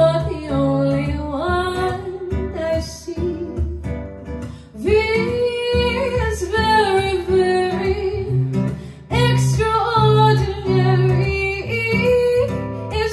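A woman singing solo into a microphone, holding long notes, with guitar accompaniment.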